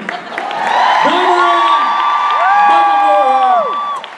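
Audience cheering and whooping, with several long high-pitched screams held for a second or two, swelling up shortly after the start.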